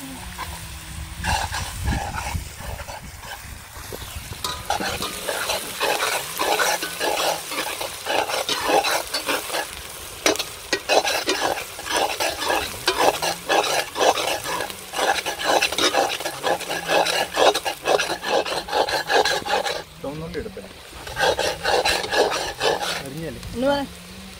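Steel ladle scraping and stirring sliced onions, green chillies and curry leaves frying in a black iron kadai, a quick run of scraping strokes with a sizzle beneath. The stirring stops briefly a few seconds before the end, then starts again.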